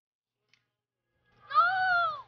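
One drawn-out, high-pitched shout from a young player, about a second and a half in, rising and then falling in pitch.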